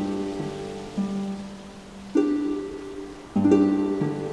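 Celtic harp played slowly and freely: single plucked notes and low chords, each left to ring and fade before the next is plucked.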